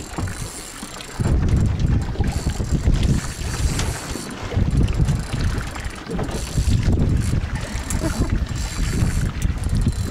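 Wind buffeting the microphone in gusts, with a short lull about a second in, over the noise of a boat at sea.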